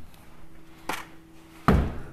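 A faint click about a second in, then a single heavy, dull thump near the end, over a faint steady hum.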